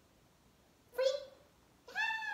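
A woman's short, high, sing-song call about a second in, the release cue that frees the dog from its down-stay, with excited high-pitched praise starting near the end. The room is quiet before the call.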